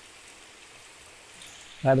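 Faint steady hiss of water in the fish tanks, with no splashes or knocks. A man starts to speak near the end.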